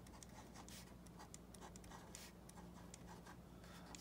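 Faint ballpoint pen writing numbers on paper: a run of short, irregular scratches and taps from each stroke, over a low steady room hum.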